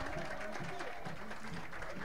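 Faint background voices over low open-air noise, with no close-up speech.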